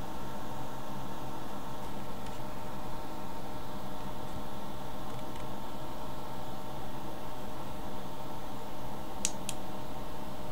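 A steady machine-like hum made of several fixed tones over a background hiss. Two short, sharp clicks come close together near the end.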